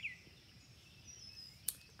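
Faint bird chirps in a quiet forest ambience: a few short high glides, with a single sharp click near the end.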